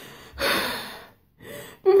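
A woman's loud gasping breath about half a second in, fading over the next half second, followed by a shorter breath just before she speaks again, in the middle of tearful talk.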